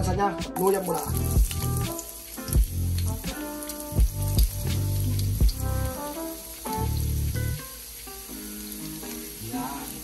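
Julienned ginger frying in hot oil in a wok, with a sizzle under background music that has a beat and a bass line.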